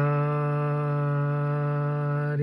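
A man's voice holding one long, steady hummed tone into a CB microphone, keeping the transmitter and amplifier putting out steady power so the wattmeter can be read.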